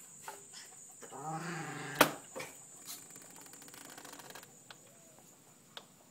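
Light taps and scuffs of a crow's feet walking over a rag rug on a tiled floor. About a second in there is a drawn-out voiced sound, and right after it a single sharp knock, the loudest sound here.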